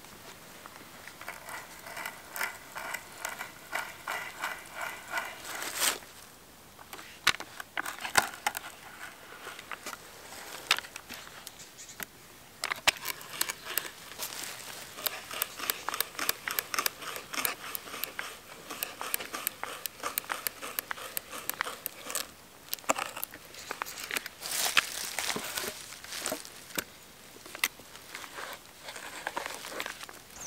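Hand brace turning an auger bit into a peeled wooden stick: the crackling and scraping of the bit cutting wood, in bouts of quick strokes with short pauses.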